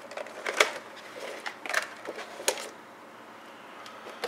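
Packaging being handled: a few sharp clicks and crinkles of cardboard and clear plastic as a portable speaker is slid out of its retail box, dying down to quiet handling in the last second or so.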